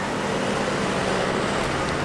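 Steady traffic noise on a city street, with the low, even hum of a vehicle engine over road noise.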